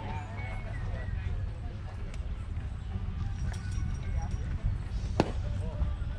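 A single sharp pop about five seconds in, as a pitched baseball smacks into the catcher's leather mitt. Under it run a steady low rumble and faint voices of players and spectators.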